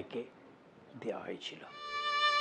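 A violin starts a held, steady note near the end, just after a faint short sliding tone.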